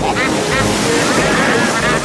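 Cartoon petrol motorboat engine running flat out with rushing water and waves as the boat speeds along. Children laugh over it.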